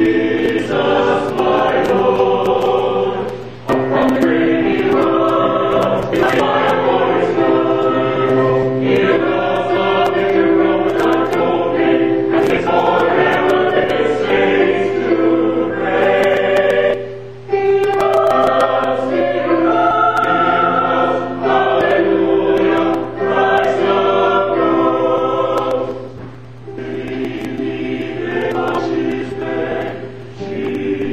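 Church choir singing in long held phrases, with brief pauses between them.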